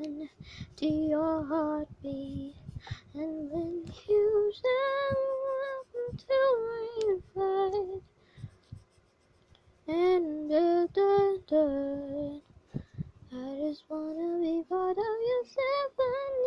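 A high female voice sings a melody unaccompanied, in short phrases, with a pause of about two seconds halfway through.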